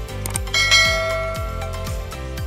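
Bell-like ding sound effect, struck about half a second in and ringing away over about a second, over background music with a steady low drum beat.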